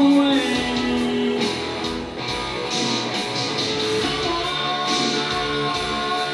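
Live rock music: a male singer with an electric guitar, played over a backing track with a steady drum beat.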